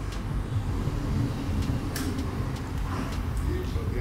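Steady low background rumble, with a few faint clicks and brief murmured voices near the end.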